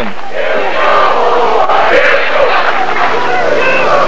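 Large crowd of spectators cheering and shouting, many voices at once, loud and sustained.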